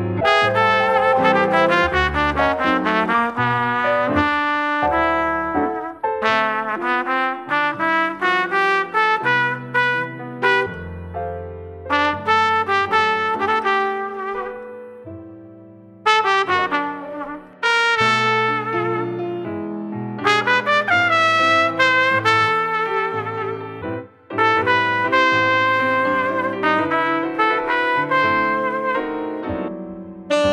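Relaxing instrumental jazz, with a brass horn playing the melody in phrases over piano accompaniment.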